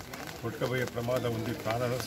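Speech only: a man talking in a low voice.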